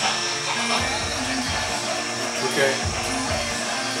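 Model-train locomotive sound effects from a phone app, played through a tiny Bluetooth speaker: a steady hiss and hum with a low pulse about once a second.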